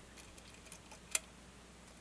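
Faint metal ticks of a lock pick working the pin stacks of a cross-key lock cylinder, with one sharper click a little past a second in.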